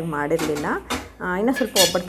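Metal turner clinking and scraping against a flat iron tawa as chapatis are cooked, with a few sharp clinks about a second in and near the end.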